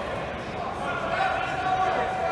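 Voices of coaches and spectators calling out in a large echoing sports hall during a grappling match. From about halfway through there is a held, steady-pitched call or tone.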